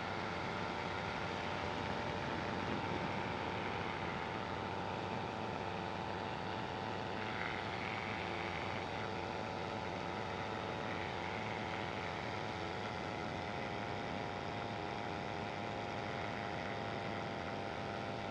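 Engine and propeller of a weight-shift ultralight trike running steadily in flight, heard from on board as a constant drone with a steady hum.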